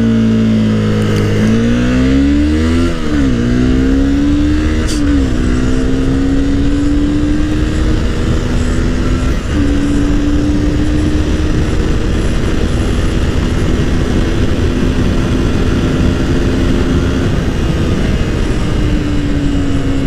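Honda CBR250R's 250 cc single-cylinder DOHC engine under full-throttle acceleration, its note climbing through the gears with quick upshift dips at about three, five and nine seconds in, then holding a steady high-speed pull. Wind rushes over the on-board microphone throughout.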